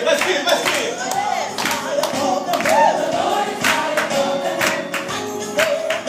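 A worship song being sung with music, with steady hand clapping on the beat.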